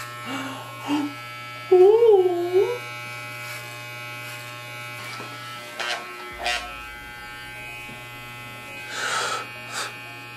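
Corded electric hair clipper running with a steady buzz throughout. A loud, wavering vocal 'ooh' sounds over it about two seconds in, and there are a couple of short clicks around six seconds.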